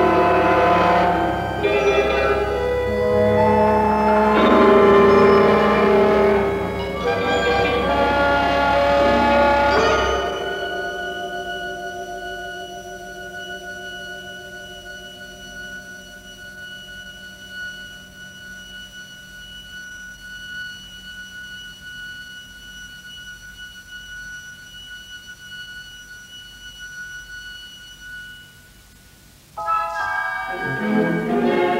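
Symphony orchestra playing a dense, loud passage of modern opera music that breaks off about ten seconds in. A few high held tones are left, fading slowly, and a loud full entry comes in sharply right at the end.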